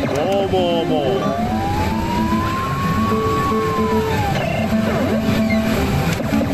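Electronic sound effects from a Famista baseball pachislot machine: a warbling tone in the first second, then one long tone that glides up and back down over about three seconds, over the continuous din of a pachislot parlor.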